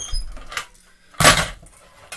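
1:24 scale diecast cars rolling across a wooden floor with a low rumble, then one loud, short clatter about a second and a quarter in.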